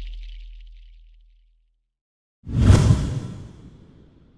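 Logo-intro sound effects: a low rumble fades out over the first second and a half, then after a short silence a sudden whoosh with a deep hit comes in about two and a half seconds in and dies away.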